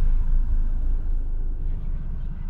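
A deep, low rumble with no clear pitch, slowly fading: a horror-trailer sound-design drone.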